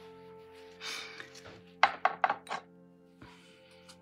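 A quick run of four or five hard taps and clicks about two seconds in, from painting tools being handled and knocked against a hard surface, over steady soft background music.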